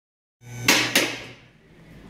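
Two sharp clacks in quick succession inside a car's cabin, with a brief low hum under them.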